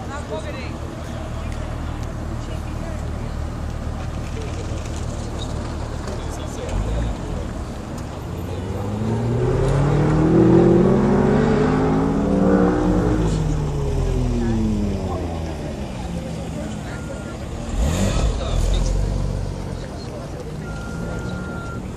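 Sports car engine accelerating down the runway, its note climbing to a peak about ten seconds in, then dropping in pitch as the car passes and draws away. A short low rumble comes near the end.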